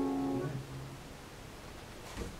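Upright piano chord held, then released about half a second in and dying away to quiet room tone.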